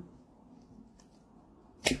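Quiet room tone. Near the end, a sudden sharp burst of a deck of tarot cards starting to be shuffled.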